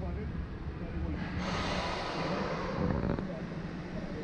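A man's voice from a broadcast in the background, faint and muffled. About a second and a half in, a rush of hiss begins and lasts nearly two seconds.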